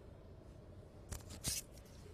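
Faint background hiss, then about a second in a few short, dry rustles and crackles from movement close to the microphone.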